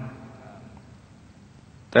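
A pause in a man's Thai narration: only a faint, even background hiss for most of it, with the voice trailing off at the start and coming back in at the very end.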